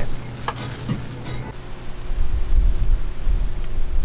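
Thin plastic bag crinkling as it is handled. Wind buffets the microphone, growing into a heavy rumble about halfway through.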